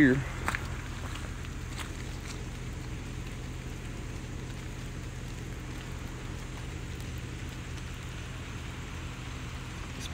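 Rainwater runoff trickling steadily over muddy ground and into a pond, an even wash of water with a few faint ticks in the first seconds.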